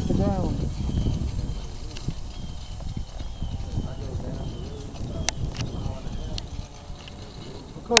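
Wind buffeting the microphone with an uneven low rumble, over the faint, wavering high whine of a radio-controlled model airplane's motor flying overhead. A single sharp click comes a little after five seconds in.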